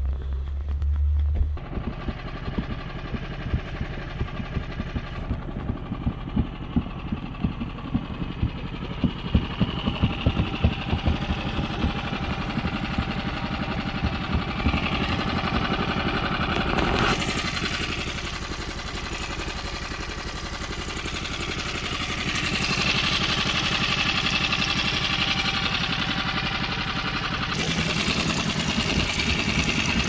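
A small boat's engine running steadily at low speed, a low pulsing drone whose sound shifts partway through. Wind rumbles on the microphone briefly at the start.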